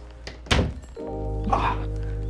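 A single sharp thunk about half a second in, followed by background music holding a steady low chord.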